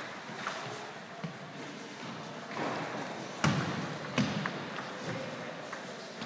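Table tennis rally: the celluloid ball is clicking off the paddles and the table in a string of sharp, short knocks at an uneven pace, the loudest about three and a half seconds in.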